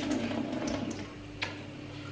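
Tap water running through a faucet-mounted filter into a glass at a kitchen sink, over a steady low hum, with a single sharp click about one and a half seconds in.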